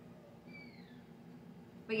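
A cat's faint, short meow, falling in pitch, about half a second in.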